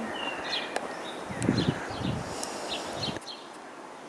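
Small birds chirping in short, repeated calls over steady outdoor background noise, with a low rumbling noise in the middle that stops abruptly along with part of the background a little after three seconds in.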